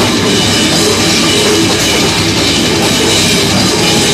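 Metal band playing live: electric guitar and drum kit with cymbals, loud and dense.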